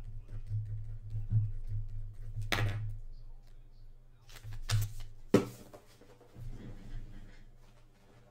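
A low steady hum with a few scattered knocks and short rustles of things being handled, the sharpest knock a little past the middle.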